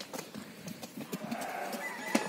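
Hooves of Sardi rams stepping on a packed-earth yard floor: a scatter of light, irregular knocks.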